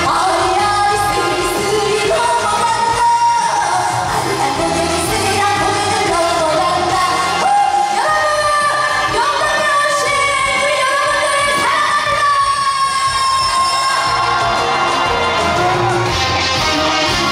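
Woman singing a trot song live into a handheld microphone over backing music. Her line has long held notes with pitch slides, rising about halfway through into a long sustained note.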